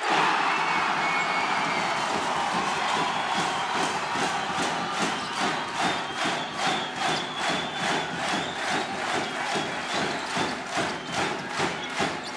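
Home basketball crowd erupting in a loud roar as a three-pointer goes in. The cheer fades and settles into a rhythmic chant with a steady beat of about two strokes a second.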